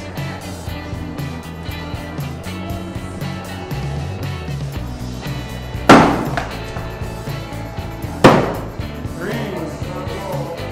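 Thrown axes striking a wooden target board twice, two sharp impacts about six and eight seconds in, over background music.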